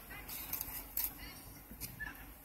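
A faint, muffled voice over a drive-thru intercom speaker, broken by a few short crackling clicks, over a low steady hum.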